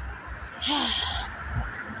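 A woman's breathy, voiced sigh, about half a second long, a little over half a second in, as she holds back tears. A low rumble runs underneath.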